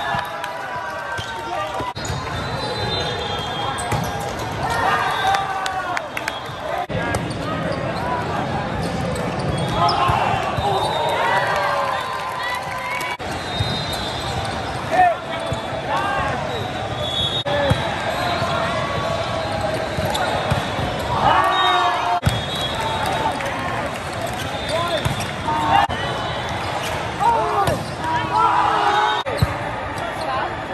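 Indoor volleyball rallies: the ball being served, set and spiked with repeated sharp hits, amid players shouting calls and spectators' voices.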